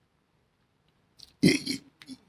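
Near silence, then a brief vocal sound from the man about one and a half seconds in.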